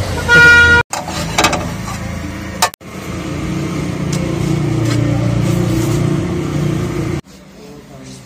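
A road vehicle's horn sounds briefly in the first second, a single short toot. Later comes a steadier low background din.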